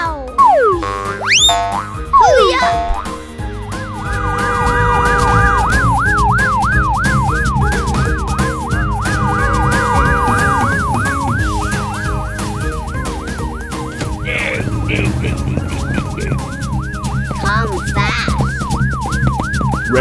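Cartoon emergency-vehicle siren sweeping up and down about twice a second, over background music with a steady beat. In the first few seconds, cartoon sound effects with quick sliding pitches come before it.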